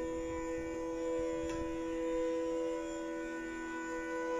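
Steady tanpura drone sounding between bansuri phrases, its strings faintly re-struck about every three seconds.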